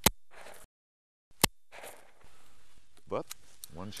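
Two shotgun shots about a second and a half apart, the first right at the start.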